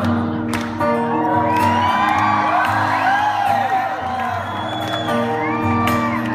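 Acoustic guitar strumming chords, with audience members whooping and cheering over it.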